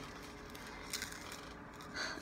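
Faint handling noise as a pen and small craft pieces are picked up, with a soft rub and a light click about a second in.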